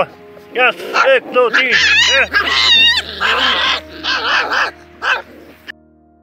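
Puppies yipping and whining in quick high-pitched calls as they play-fight, dying away about five seconds in.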